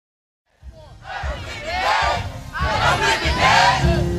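Digital silence, then about half a second in a crowd starts shouting. Many voices yell at once and grow louder.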